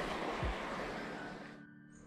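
Outdoor waterside noise fading out over about a second and a half, leaving faint background music with a few held notes.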